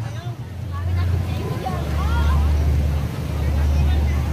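Crowd of passers-by talking: faint scattered voices over a steady low rumble.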